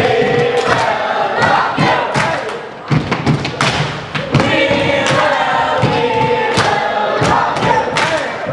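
A group of children shouting a chant together, with hand clapping and feet stomping on a wooden floor.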